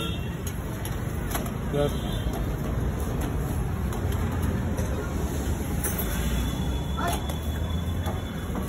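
Steady low street rumble of road traffic, with brief snatches of voices.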